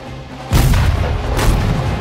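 A heavy explosion bursts in about half a second in, with a deep rumble carrying on and a second sharp blast about a second later, over orchestral film music.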